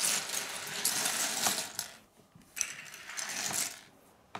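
Loose plastic Lego bricks clattering and rattling as a hand pushes them about on a wooden table, in two spells, the second starting a little past halfway.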